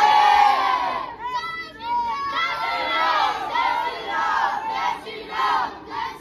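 A group of boys shouting and cheering together, many high young voices overlapping, with brief lulls.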